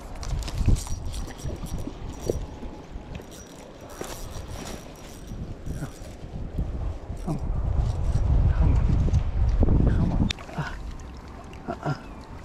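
Wind rumbling on a handheld phone microphone, with handling knocks and clicks, while a fish is fought and landed from the bank on a spinning rod. The rumble grows heaviest about eight to ten seconds in.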